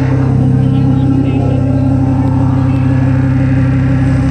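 Live rock band holding one loud, sustained chord on amplified guitars and bass, a steady low drone that does not change.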